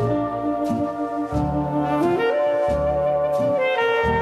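Small jazz band in an instrumental passage with no vocal. A wind-instrument melody plays long held notes, stepping up in pitch about halfway through, over steady bass notes.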